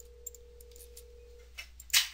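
Quiet room tone with a steady low hum and a faint steady tone that stops about three-quarters of the way through. There is a faint tick early on and a short, sharp, louder click just before the end.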